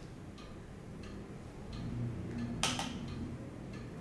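Quiet handling sounds of an eyeshadow brush and palette: a few faint ticks and one louder short brushing rustle about two and a half seconds in.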